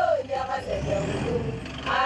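Toyota SUV driving slowly through mud, its engine running low, with voices over it at the start and again near the end.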